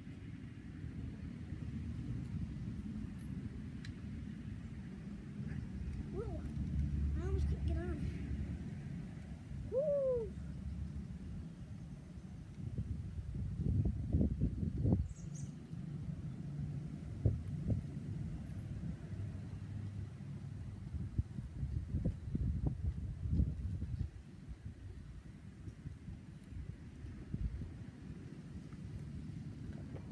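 Outdoor wind rumbling on the microphone, with a few short sliding calls near a third of the way in and clusters of short knocks and thumps in the middle.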